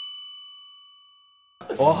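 A single bright bell ding sound effect: struck once, it rings with several clear high tones that fade over about a second and a half before being cut off.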